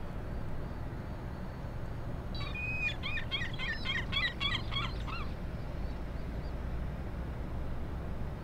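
A bird calling in a quick series of short notes for about three seconds, starting a couple of seconds in, over the steady low rumble of the ferry underway.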